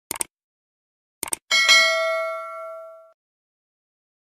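Subscribe-button animation sound effect: a quick double click at the start and another about a second later, then a bell ding that rings out and fades over about a second and a half.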